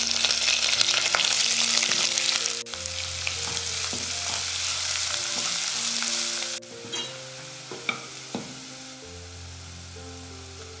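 Hot oil sizzling loudly as curry leaves and green chillies fry in a nonstick pan. The sizzle drops off abruptly twice, and in the softer last part chopped onions are stirred with a spatula that clicks against the pan a few times.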